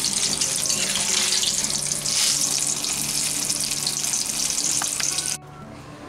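Pakoras deep-frying in hot oil in a wok: a steady, loud sizzling crackle that cuts off suddenly about five seconds in.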